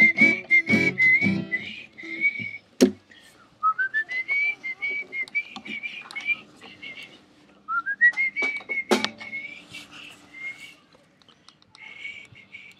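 A man whistling a melody in three phrases, each sliding up into a high, lilting line. A few guitar strums die away at the start, and there are two sharp knocks, about three and nine seconds in.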